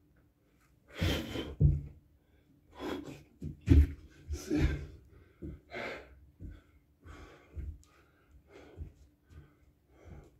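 A man breathing hard in gasps and sharp exhales, worn out from rapid burpees, with a few heavy thuds as he lands on a rubber floor mat.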